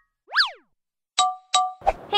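Cartoon-style intro sound effects: a quick boing that sweeps up in pitch and back down, then two short chime notes about half a second apart, with a brief thump just before the speech begins.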